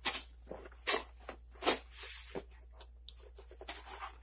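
Cardboard shipping box being pulled open by hand: a few sharp scrapes and tearing sounds of the flaps and packing, with a longer rasp about halfway through.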